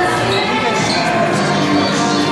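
Background music playing in a busy shop, with held notes, mixed with the voices of people around.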